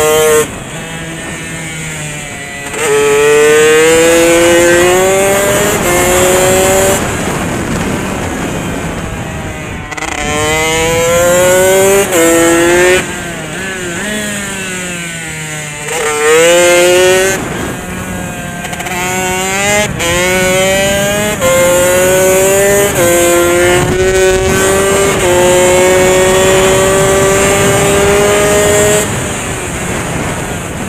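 Motorcycle engine at racing speed, accelerating hard several times, its pitch climbing in short steps with a brief break at each upshift, then dropping away in quieter off-throttle stretches and downshifts. Later it holds a long, slowly rising note at high revs before easing off near the end.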